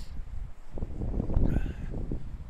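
Wind buffeting the microphone of a handheld camera, mixed with handling noise as the camera is moved: a low, uneven rumble that swells about a second in.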